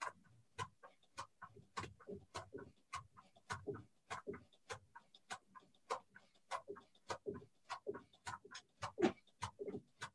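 Judo belt swung as a skipping rope: a steady rhythm of faint, short slaps as the belt and bare feet strike the mat, a little under two a second.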